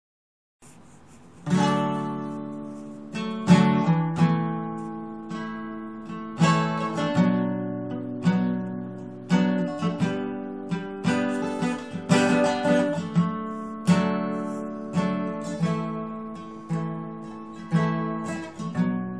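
Acoustic guitar strummed, chords struck about once a second and ringing between strokes, starting about a second and a half in.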